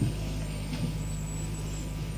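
Steady low hum and hiss of an old recording, with a faint high whistle running through it and no distinct event.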